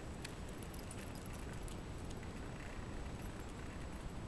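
Outdoor handheld recording: a steady low rumble of wind and handling noise on the microphone, with faint scattered light clicks and clinks.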